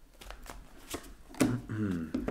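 Tarot cards being shuffled by hand: a quick run of light card snaps and slides through the first second or so. A man's voice comes in near the end.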